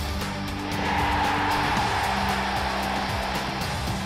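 Intro music with a steady beat, joined about a second in by a rushing whoosh sound effect that swells and fades away by about three seconds.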